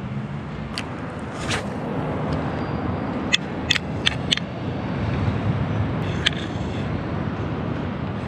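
Steady rumble of road traffic, with a handful of short sharp clicks scattered through, several close together about three to four seconds in.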